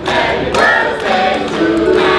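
Music with a choir of voices singing together in held notes.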